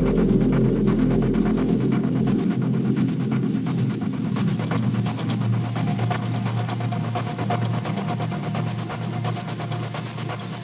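Electronic drone music: sustained low tones under a grainy noise texture. A deep bass tone drops out about two and a half seconds in, leaving a steady low drone with a faint higher tone over it.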